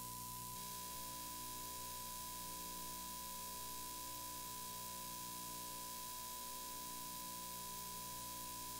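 A steady, unbroken line-up test tone on the broadcast feed, over constant hiss and a low mains hum.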